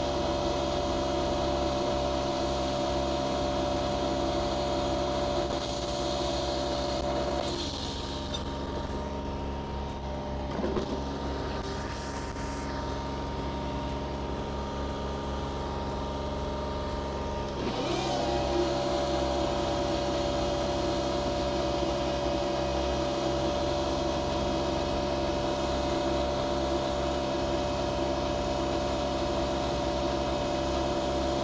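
Toro TriFlex ride-on triplex greens mower running steadily as it mows, its cutting reels freshly ground. Its steady whine drops away for about ten seconds in the middle as the mower is at the far end and turns, then returns louder as it heads back.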